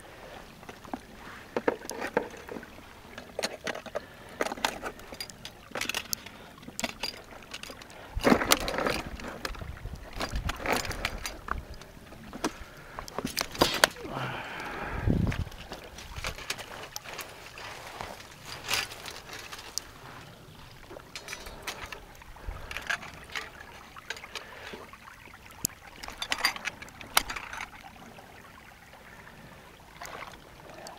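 Wet splashing and sloshing in shallow water and mud, with irregular clicks, knocks and rustles, as a trapped beaver and a steel foot trap on a rebar drowning rod are handled. A heavier thump comes about halfway through.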